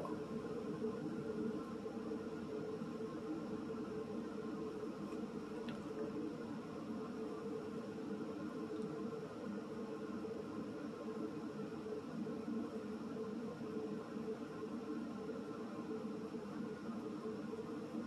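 Quiet steady background hum of room tone; the fingertip blending of makeup gives no distinct sound.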